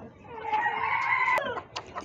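Rooster crowing: one long held note that cuts off suddenly about one and a half seconds in.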